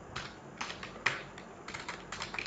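Computer keyboard keys being pressed: a handful of separate keystrokes, unevenly spaced, the one about a second in the loudest.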